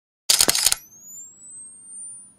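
Camera sound effect: a loud shutter clatter about a quarter-second in, lasting about half a second, followed by the thin, high, slowly rising whine of a camera flash recharging.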